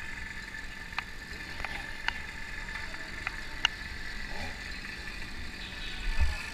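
Low city traffic rumble with a steady high whine running under it, broken by about seven short sharp clicks or rattles.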